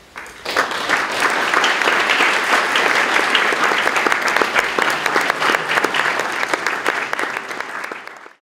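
Audience applauding: dense clapping from a room full of people. It swells in about half a second in and holds steady, easing slightly near the end.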